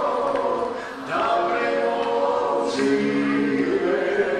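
Several voices of a family singing a song together in a home recording, largely unaccompanied, with a brief dip about a second in before the singing carries on.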